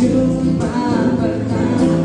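Live acoustic band: a male vocalist sings held, drawn-out notes over acoustic guitar and bass.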